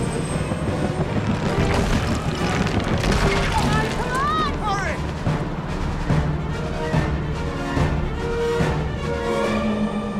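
Dramatic film score playing at full loudness with action sound effects mixed in, including some sudden hits, and a brief cry whose pitch bends up and down about four seconds in.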